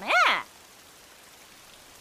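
A girl's voice in Japanese anime dialogue ends a line on one drawn-out syllable that rises and falls in pitch. Then a faint, steady hiss of background noise.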